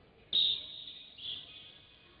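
Referee's whistle, a long sharp blast followed by a shorter one, stopping the freestyle wrestling bout so the wrestlers break and stand up.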